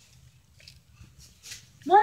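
A dog's high-pitched bark starts suddenly and loudly near the end, after a stretch of quiet background.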